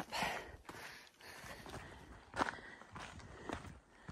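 A hiker's footsteps on a forest trail, faint, with a few scattered sharp taps.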